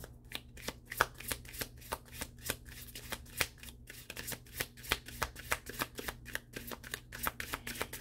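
A deck of large tarot cards being shuffled by hand, overhand, with the cards clicking and slapping against each other in quick, irregular ticks, several a second.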